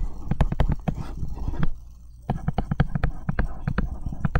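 Stylus tip tapping and ticking on a tablet screen during handwriting: a quick, irregular run of sharp clicks with a short pause about halfway.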